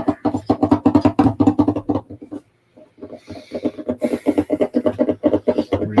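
Music: a fast plucked-string riff of quick, evenly spaced notes. It breaks off for about half a second in the middle, then picks up again.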